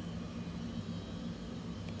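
Steady low background hum with a faint hiss, and one faint short click near the end.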